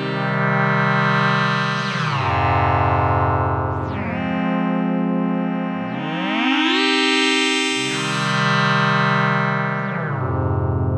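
Behringer Pro-800 analog polyphonic synthesizer playing sustained chords that change about every two seconds, each one sliding in pitch into the next. The tone brightens and darkens in slow swells.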